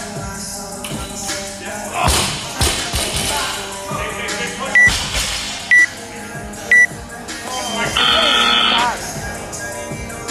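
Workout timer beeping the end of a 20-minute time cap: three short, high beeps a second apart, then one longer beep, over loud background music.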